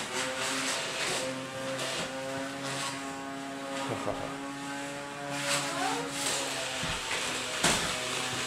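Battery-powered hover soccer disc's fan motor running with a steady hum as the disc glides over a wooden floor, with a few sharp knocks as it is kicked and bumps into things.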